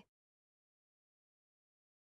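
Near silence: the digital pause between two repetitions of a spoken phrase, with the tail of the previous word fading out right at the start.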